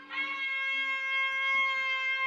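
A woman's long, high scream of delight, held on one steady note.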